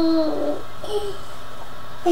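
A child's voice holding a long sung note that slides slightly down in pitch and stops just after the start, followed by a brief vocal sound about a second in, over a low steady room hum.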